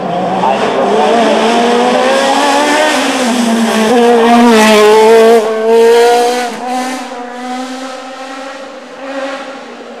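Open sports-prototype hill-climb race car at full throttle, its engine rising and falling in pitch through gear changes as it comes through a bend. It is loudest about five seconds in as it passes close, then fades away up the hill.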